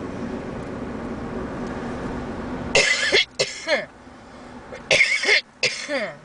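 Steady road and engine noise inside a car cabin, then a person coughs twice in quick succession and again about two seconds later; the cabin rumble is lower after the coughs.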